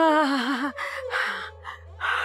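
An elderly woman moaning with a wavering, trembling pitch, breaking into gasping breaths about a second in, over a low sustained music drone.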